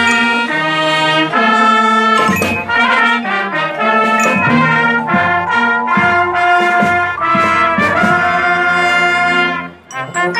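Brass and percussion orchestra playing: trumpets and trombones hold loud sustained chords that change every second or so, with a few sharp percussion strikes. The phrase breaks off briefly near the end, and short detached notes start straight after.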